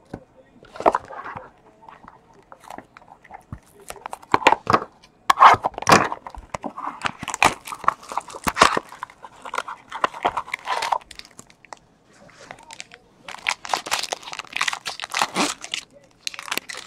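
Plastic card sleeves and a foil card-pack wrapper crinkling and crackling as they are handled, in irregular bursts that grow thickest and most continuous near the end.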